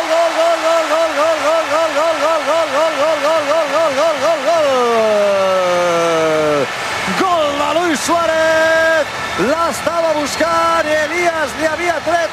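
A football commentator's drawn-out goal shout: one long held call with a fast, even warble for about four seconds, sliding down in pitch and breaking off, then more long shouted notes, over a stadium crowd cheering a goal.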